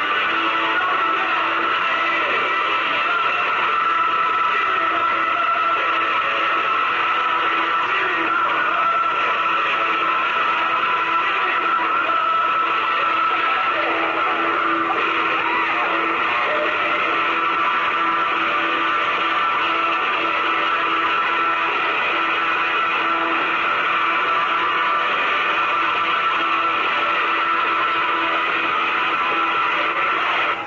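Music with guitar, running at a steady level.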